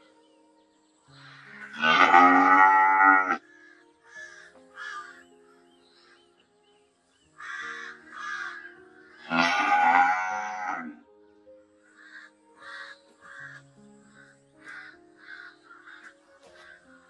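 A cow mooing twice in long, loud calls, one about a second in and one about nine seconds in, each lasting about two seconds. Between and after them come short repeated calls, several a second.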